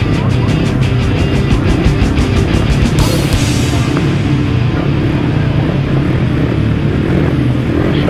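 Intro music over the title card: a fast, even beat for the first three seconds, then a swell into sustained low notes.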